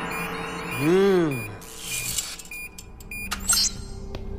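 Film sound effects for a robot's low-battery warning: short electronic beeps repeating about twice a second, with a voice going "hmm" in a rising-then-falling pitch about a second in, followed by brief electronic clicks and sweeps.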